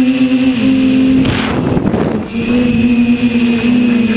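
SunnySky brushless motors of a TBS Discovery FPV quadcopter buzzing in flight, picked up by the onboard camera, with a steady whine that shifts slightly in pitch with throttle. In the middle it gives way for about a second to a rush of wind on the microphone, then returns a little lower.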